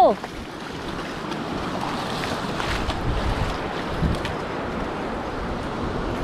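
Surf washing over the shallows with a steady rushing hiss, and wind buffeting the microphone.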